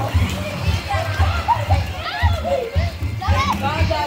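Children shouting and chattering at play over loud music with a steady bass beat.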